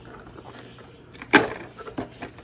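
Perforated cardboard door of a Toy Mini Brands calendar box being pushed open with one sharp snap a little over a second in, followed by a few faint clicks.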